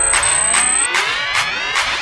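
Electronic intro music in which the heavy bass drops out and a rising synth sweep builds, with regular percussion hits continuing over it.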